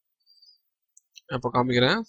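Near quiet with a few faint computer-mouse clicks about a second in, then a voice starts speaking near the end.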